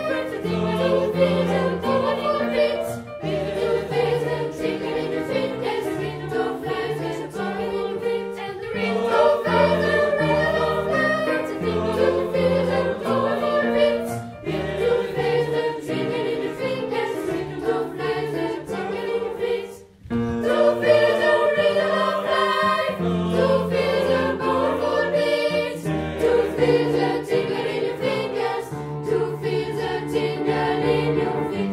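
Children's choir singing, with a brief break in the sound about 20 seconds in.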